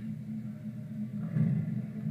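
A pause in a man's speech: a short hesitant "um" about a second in, over a steady low hum.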